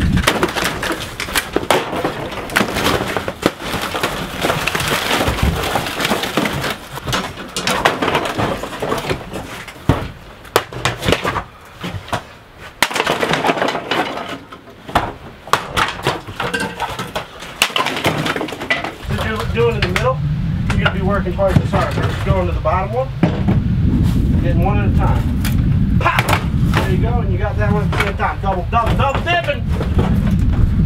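Hammer blows and wood paneling cracking and breaking apart as the interior of an old camper trailer is torn out, with many sharp knocks through the first two-thirds. A low steady rumble comes in about two-thirds of the way through.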